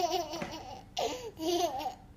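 A toddler laughing in high-pitched peals: one peal running into the start and fading, then a second burst of laughter about a second in.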